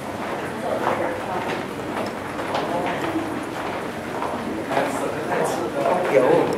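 Footsteps of a group of people walking together over a hard floor, mixed with overlapping low chatter from the group.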